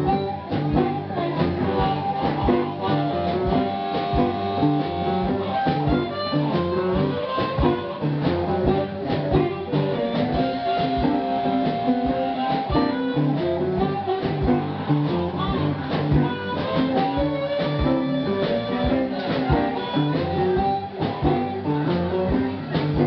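Live blues band playing an instrumental break without vocals: electric guitar and drums, with harmonica played through a microphone and holding long notes about four and ten seconds in.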